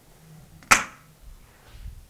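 One sharp knock, as of a hard object set down or struck, about two-thirds of a second in, followed by soft footsteps in a small room.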